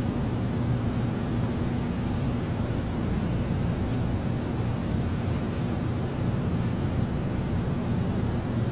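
Steady low hum with a faint hiss: the room tone of an indoor hallway while nobody speaks.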